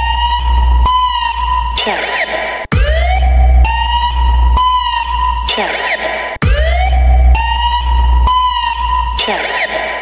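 DJ sound-check competition remix: electronic music with heavy deep bass, rising and falling synth sweeps and a steady high beep, made for testing speakers. A short phrase loops about every three and a half seconds, with a brief cut-out before each repeat.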